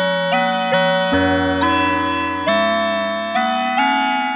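UDO Super 6 synthesizer playing a run of about eight sustained notes that overlap one another, with a low tone joining about a second in. LFO 1 runs at audio rate in high-frequency mode and frequency-modulates both DDS oscillators, giving an FM tone.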